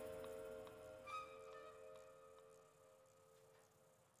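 Quiet film-score music: a few long held notes, a higher one joining about a second in, fading away toward the end.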